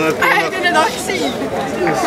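Several people talking at once near the microphone: spectators' chatter.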